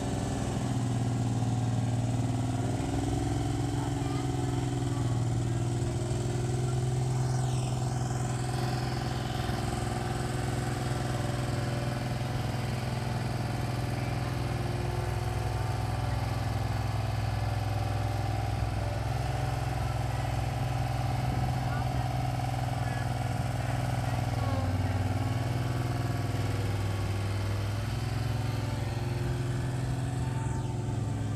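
Engine of a Wacker Neuson RD12 ride-on tandem drum roller running steadily as it drives along, its pitch dipping briefly a few seconds before the end.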